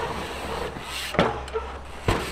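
Dirt jump bike landing off a small dirt jump with a thud, then rolling on over packed dirt, with another sharp knock a little over a second in and a low rumble underneath.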